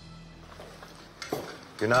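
Faint clinks of cutlery and dishes at a breakfast table over quiet room tone. A brief louder sound comes about a second in, and a man's voice starts near the end.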